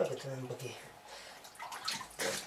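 Brine sloshing and dripping in a cheese-salting tank as a hand moves and turns the floating wheels of sheep's-milk cheese.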